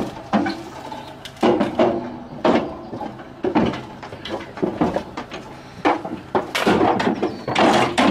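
Metal livestock trailer gates and ramp rattling and banging as they are opened: a string of irregular clanks and knocks.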